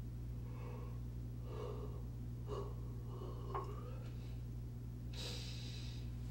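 Steady low electrical hum on a room recording. Over it come a few faint breath sounds, then a louder hissing breath near the end lasting just under a second.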